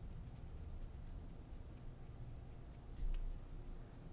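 Fingers rubbing and scratching at a beard, a faint rapid scratchy rasp that stops just before a low bump about three seconds in.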